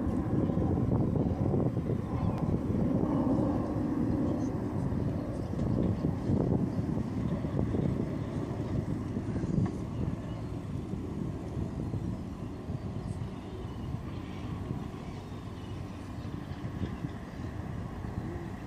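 Steady low rumble of background noise, easing slightly after the first several seconds.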